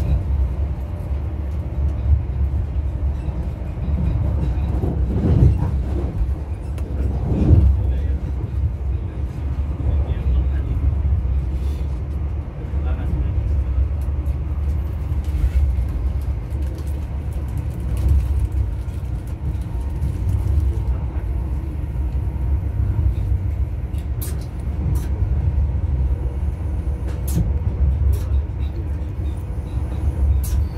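Inside a High Speed Train coach hauled by Class 43 power cars, running at speed: a steady low rumble of wheels on the track, with two brief louder surges about five and seven seconds in.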